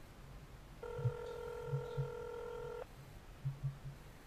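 A telephone ring-back tone: one steady beep of about two seconds, starting about a second in, from a mobile phone held to the ear while a call waits to be answered. Soft low thumps sound irregularly underneath.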